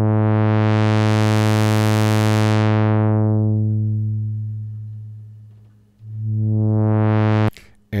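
1974 Minimoog synthesizer, one held low note run through its 24 dB-per-octave ladder low-pass filter as the cutoff is swept: the tone opens from dull to bright, then closes down until the note is almost fully erased. It opens again more quickly and stops abruptly near the end.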